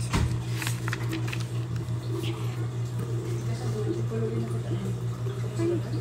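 Paper rustling and a few soft clicks as a picture-book page is turned and handled, over a steady low hum.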